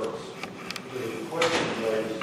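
Indistinct voices talking around a meeting table, with a few short clicks and a brief noise about one and a half seconds in.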